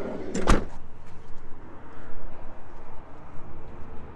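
Sliding side door of a Ram ProMaster van pulled shut, latching with one loud slam about half a second in.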